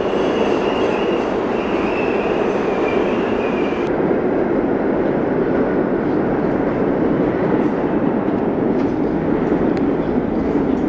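Subway train running past the platform: a loud, steady rumble of steel wheels on rail, with a high, wavering wheel squeal over the first four seconds that cuts off suddenly. Faint clicks from the wheels later on.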